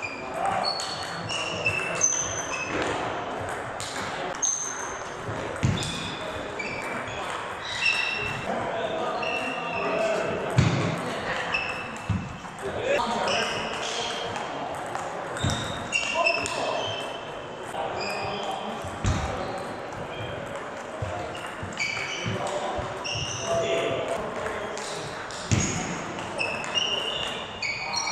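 Table tennis rallies in an echoing sports hall: the ball clicking sharply off bats and table in quick runs of knocks, with short high squeaks of shoes on the wooden floor and voices in the background.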